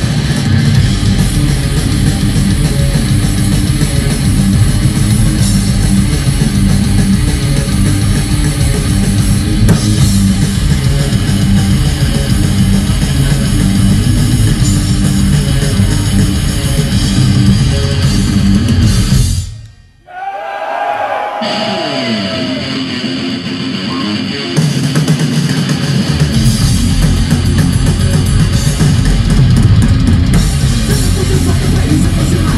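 Live thrash metal band playing an instrumental passage with distorted electric guitars, bass and a fast drum kit. About two-thirds of the way through, the band stops dead. For a few seconds a quieter passage follows with a single line of bending notes, then the full band crashes back in.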